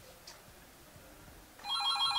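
Near quiet, then near the end an electronic phone ringtone starts: a fast trill of several steady tones.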